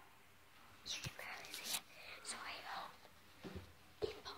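A girl whispering close to the phone's microphone, starting about a second in, with a soft bump near the end.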